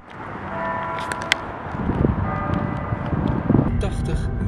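Car driving along a road, heard from inside the cabin: a steady low road and engine rumble, with a few faint clicks about a second in.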